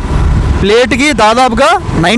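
Mostly a person talking. Before the voice starts, about the first half-second holds only a low rumble of wind on the microphone from the moving motorbike.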